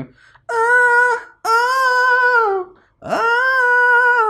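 A high solo singing voice holding three sustained vowel notes of about a second each, each bending down in pitch at its end, with no accompaniment. It is a bright, nasal tone that is immediately called 'very, very, very pharyngeal', placed 'right behind your nose'.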